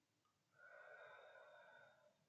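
A person's deep, audible breath, soft and steady, starting about half a second in and lasting about a second and a half.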